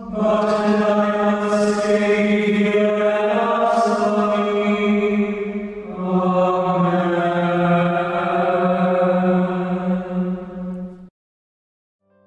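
Slow chant with long held notes, the pitch shifting about halfway through and cutting off abruptly about eleven seconds in.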